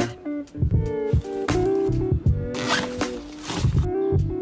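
Background music with guitar, with a suitcase zipper being pulled for about a second a little past halfway through.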